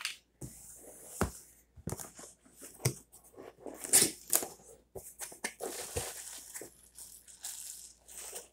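Cardboard box being handled and turned over: irregular scraping and rustling of cardboard with sharp knocks, loudest about halfway through.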